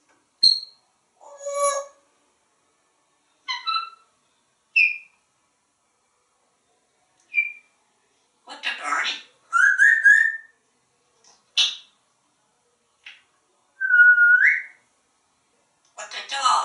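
African grey parrot giving a string of short, separate whistles, chirps and squeaks with silent gaps between them, several sliding upward in pitch. The longest is a rising whistle near the end.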